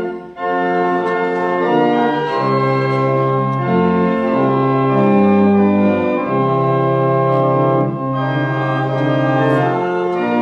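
Organ playing the offertory hymn tune in sustained chords that change every second or so, with a brief break just after the start.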